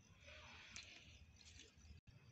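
Near silence with a faint, soft rustle of SunPatiens leaves as a hand moves among the plants.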